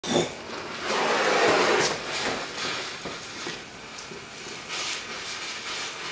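Fire: a sharp onset, then about a second of loud rushing noise like a flame flaring up. Quieter hissing and crackling follows, with a shorter rush near the end.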